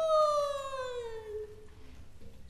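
A female Kunqu opera singer holding one long sung note that slowly falls in pitch and fades out about a second and a half in.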